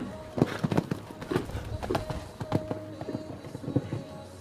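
Hooves of a show-jumping horse cantering on a sand arena: a run of soft, irregular thuds, a few each second.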